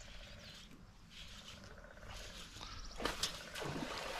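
Baitcasting reel being cranked while a hooked bass is fought, with faint rapid ticking from the reel. A louder burst of splashing comes about three seconds in as the fish jumps at the surface.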